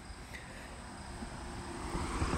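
Road traffic noise: a vehicle approaching, its rumble and tyre noise growing steadily louder.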